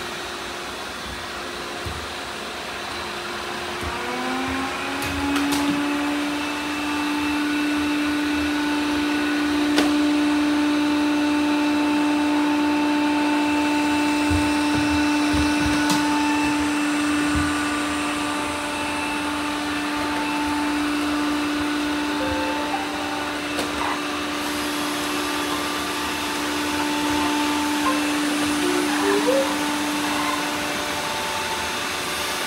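Several robot vacuum cleaners running at once. A motor whine rises about four seconds in, and then the machines run steadily as a hum of several tones, with a few short knocks.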